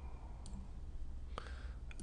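Computer mouse clicks: about three separate clicks spread across a couple of seconds, over a low steady hum.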